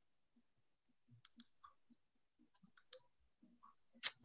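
Near silence over a video call, broken by a few faint, scattered clicks, the strongest about three seconds in.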